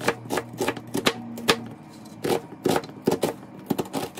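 Chef's knife chopping an onion on a plastic cutting board: about a dozen sharp knocks, uneven, a few a second.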